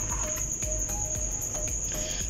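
Crickets chirping in the background: a steady, high-pitched trill with a fast, even pulse.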